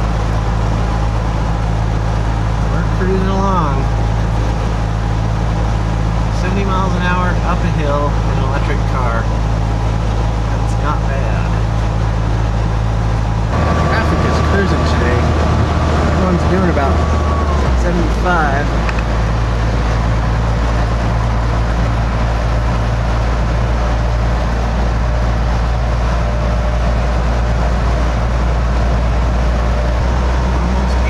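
Road and wind noise inside the cab of an electric-converted pickup truck at about 70 mph on the freeway: a loud, steady low rumble with a thin steady tone above it. The rumble and the tone change for a few seconds about halfway through.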